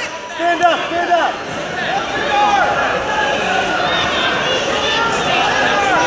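A man shouting short calls for about the first second, then many voices of a crowd shouting and talking over one another in a large hall.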